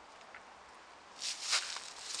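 Footsteps rustling through grass scattered with dry fallen leaves, a few steps starting about a second in after a quiet moment.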